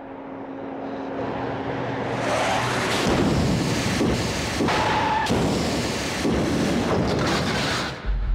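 Film sound effects of an armored truck crash: a rumble swells up over the first few seconds into loud crashing noise, broken by several sharp heavy impacts as the truck is rammed and tips over.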